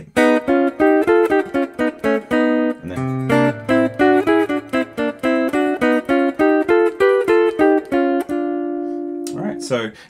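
Ibanez AR520 electric guitar through a Fractal Audio FM9, playing a quick run of picked single notes: a whole-tone pattern on D, repeated a step lower at each chord change down through D flat, C and B, landing on B flat. The last note is left ringing for about a second before the playing stops.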